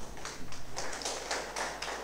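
Applause from a small seated audience: many quick, irregular hand claps that start all at once.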